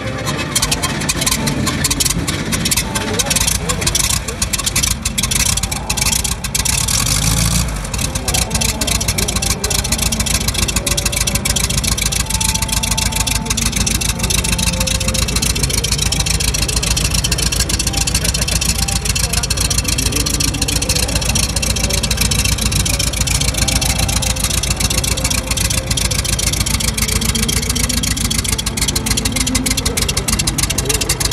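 A classic car's engine starting up and running loud and rough for the first several seconds. It rises briefly about seven seconds in, then settles into a steady idle.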